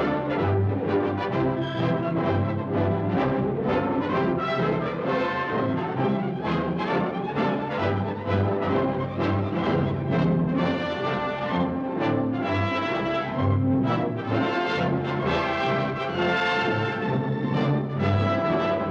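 Orchestral film score led by brass, playing continuously with no speech.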